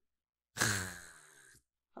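A man's single breathy, drawn-out "haa" like a sigh, starting about half a second in and fading away over about a second.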